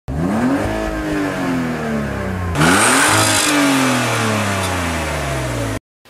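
Car engine revved twice while parked: each time the pitch climbs quickly and then falls slowly back over about two seconds. The second rev comes about halfway through, and the sound cuts off suddenly near the end.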